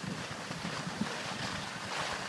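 Steady rushing wind noise on the microphone of a camera moving down a ski slope.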